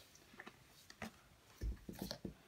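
Faint clicks and a couple of soft low knocks from handling, over quiet room tone.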